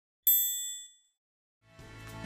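A single bright, high ding, the chime of a channel logo ident, rings out and fades away within about a second. Faint music starts to fade in near the end.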